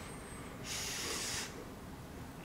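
A person blowing on hot food to cool it: one breathy puff of air starting about two thirds of a second in and lasting under a second.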